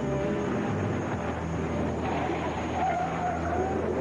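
A vintage sedan's engine running as the car drives up and skids to a stop, the tyres scraping noisily over the ground in the second half. A film music score dies away in the first second.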